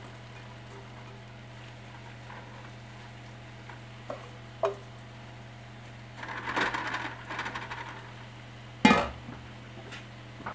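Sliced mushrooms tipped from a stainless steel bowl into a stainless steel pot, rustling and clinking against the metal for a couple of seconds, followed by one sharp metallic knock near the end. A steady low hum runs underneath.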